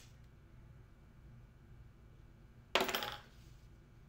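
A single sharp metallic clink from a cigarette lighter, nearly three seconds in, ringing briefly before dying away, over faint room tone with a low hum.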